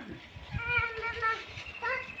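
A young child's high-pitched voice in a drawn-out, wordless call, held for most of a second, with a second call rising in pitch near the end.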